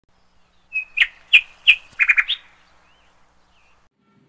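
A bird chirping: three sharp chirps about a third of a second apart, then a quick run of four, the last rising in pitch, followed by a couple of faint calls.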